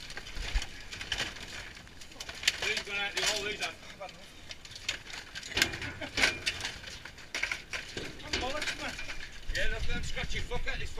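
Broken wooden slats and debris clattering and rustling in a metal skip as terriers and men dig through the pile, with scattered sharp knocks and clinks.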